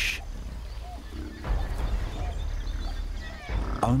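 Water buffalo grunting low in the water, with two deeper rumbling grunts, about one and a half and three and a half seconds in.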